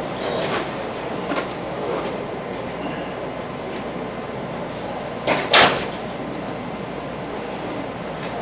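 Classroom room noise with faint voices in the background and a few soft clicks; a short, sharp noise, the loudest thing here, comes about five and a half seconds in.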